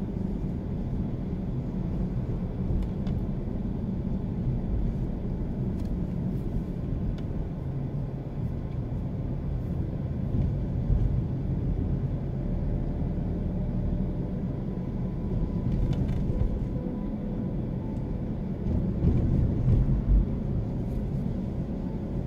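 Steady engine and tyre rumble of a car driving along a paved road at moderate speed, with a faint steady whine in the second half.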